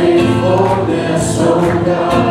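Live contemporary worship band playing a song: voices singing over acoustic guitar, keyboard and a steady beat of drum strikes, with a congregation singing along.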